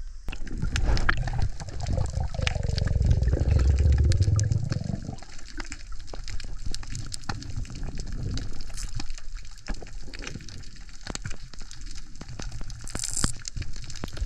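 Water churning and bubbling loudly for about the first five seconds, then underwater ambience: a steady crackle of sharp, irregular clicks over a low rumble.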